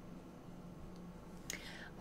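A quiet pause in a woman's speech, with a faint steady hum of room tone, then one quick in-breath about one and a half seconds in.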